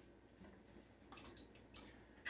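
Near silence, with a few faint taps as diced potato pieces are gathered off a plastic cutting board and dropped into a pot of water.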